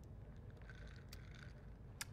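Near silence: studio room tone with a faint low hum and one faint click about a second in.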